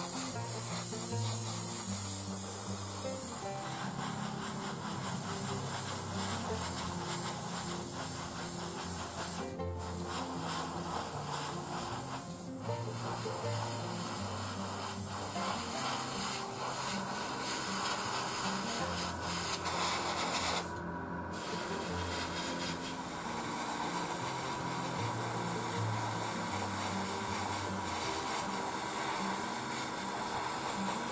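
Gravity-feed airbrush spraying, a steady air hiss that stops briefly a few times as the trigger is let off, over background music with a bass line.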